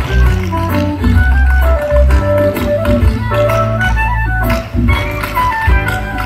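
Loud live band music over a stage PA: a melody in quick stepped notes over heavy bass, with regular drum hits.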